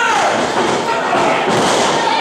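Thuds of wrestlers' bodies hitting the boarded wrestling-ring mat, mixed with voices from the ring and the crowd.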